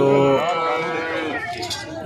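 A cow mooing: one long, steady call lasting about a second and a half.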